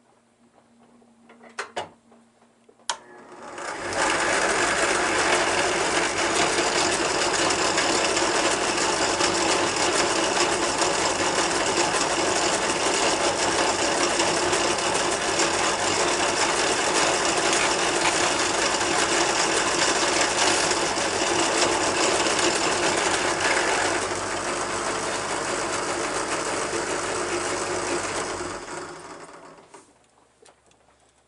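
Benchtop drill press switched on with a few clicks, its motor running steadily for about 25 seconds while a small twist bit drills holes in a plastic cassette tape shell. It gets slightly quieter near the end, then winds down as it is switched off.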